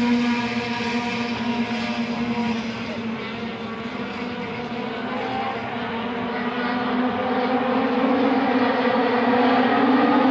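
Race car engines running on the circuit out of sight. The sound is steady, eases off slightly partway through, then grows louder toward the end as cars come nearer.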